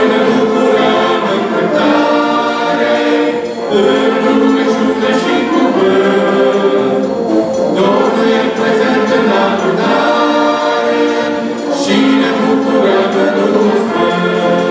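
A group of voices singing with a brass band accompanying, in sustained phrases of about four seconds separated by brief breaks.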